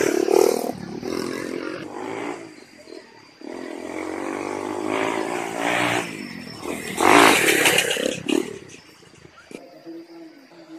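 Dirt bikes riding past on a lane, their engines rising and falling in pitch as they rev. The loudest pass comes about seven seconds in, then the sound fades.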